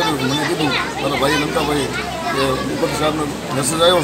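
A man speaking at an interview: only speech is heard.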